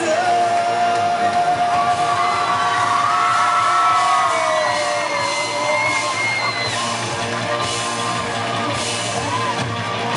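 Live rock band playing loud in a hall, with shouted singing over guitars and drums; a long note is held through the first half.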